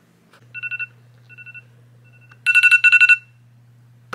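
Smartphone alarm going off before dawn: high electronic beeps in quick pulsed runs, the last run louder and longer, about two and a half seconds in.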